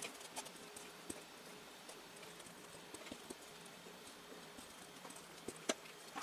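A few faint, soft taps of a small ink pad being dabbed onto a lace ribbon lying on paper, with quiet room tone between them; two taps come close together near the end.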